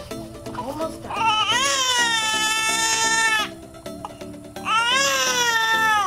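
Newborn baby crying: two long wails, the first rising and then held for about two seconds, the second starting near the end. Soft music plays underneath.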